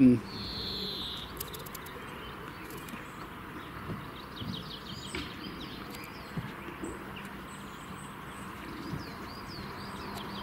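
Small birds chirping in quick repeated calls over a steady outdoor hiss, with a short whistle-like note about half a second in and a few faint knocks.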